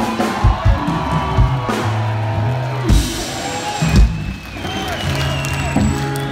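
Rock band playing live: drum kit strokes over held bass-guitar notes.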